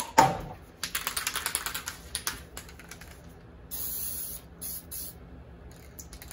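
Aerosol spray paint can: a couple of sharp clicks, then a quick rattle of the mixing ball as the can is shaken, then two short hisses of spray.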